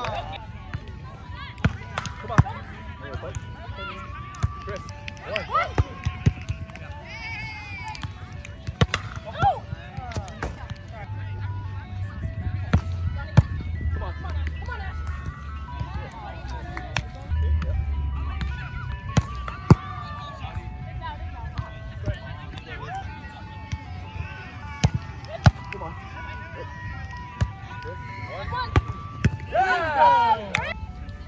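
Background music with a simple stepping melody over outdoor volleyball play: sharp slaps of hands on the ball now and then, and brief shouts from the players.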